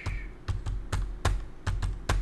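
Computer keyboard being typed on, a series of separate key presses a quarter to half a second apart, as a new chart symbol is entered.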